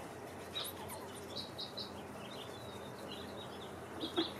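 Faint birds chirping in the background: a handful of short, high chirps, several in quick succession in the first half, over a low steady hiss.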